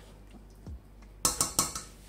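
A spatula knocking against a stainless steel cooking pot: a quick cluster of three or four clinks a little past halfway.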